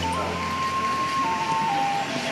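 A simple electronic jingle of single pure notes, stepping slowly up and down in pitch, over a steady background of room noise.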